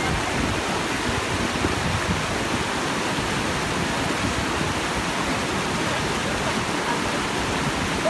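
Fast, turbulent mountain river rushing over rocks: a steady, unbroken wash of whitewater.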